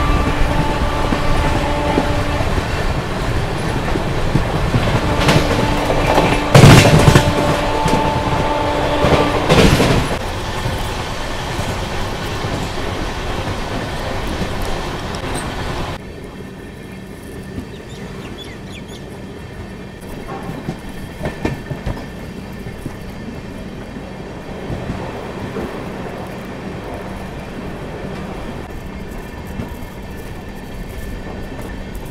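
Express passenger train's coaches running over the track, heard from an open coach door with the wheels clattering and two loud clanks near seven and ten seconds; a steady pitched tone sounds twice in the first half. About halfway through the sound drops abruptly to a quieter rumble with scattered clicks.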